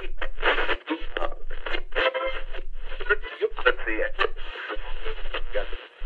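A voice coming through a small radio: thin, tinny speech with a low hum under it, broken by a few short gaps.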